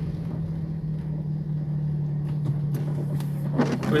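Car engine idling, heard from inside the cabin as a steady low hum. A few faint knocks come near the end as the windshield wipers sweep.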